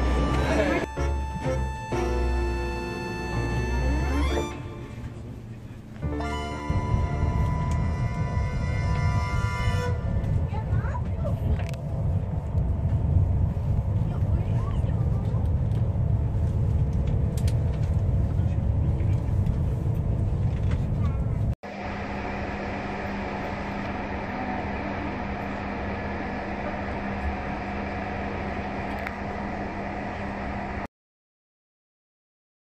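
Music for the first few seconds, then the steady low rumble of a high-speed train running at speed, heard from inside the carriage. After a sudden cut about two-thirds of the way in, a steadier, quieter running hum with one low tone.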